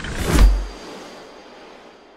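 Logo-sting sound effect: a whoosh that sweeps down into a deep boom about half a second in, then a long fading tail.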